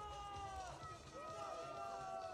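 A voice drawing out long held notes that slowly fall in pitch, in two phrases, over a low steady background hum.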